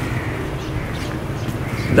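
Steady low outdoor background rumble, with no distinct event standing out.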